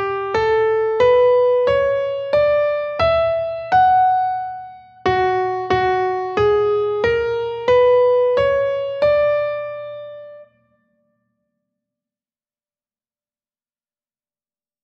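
Piano playing a single-line dictation melody of evenly spaced notes: two rising phrases of about seven notes each, the last note dying away about ten and a half seconds in.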